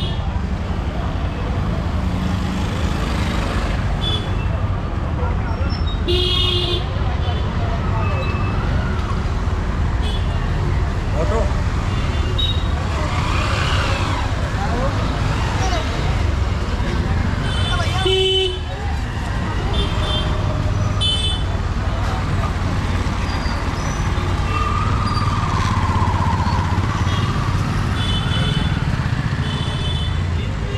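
Busy street traffic of auto-rickshaws and scooters running, with vehicle horns tooting in short beeps several times and voices of passers-by.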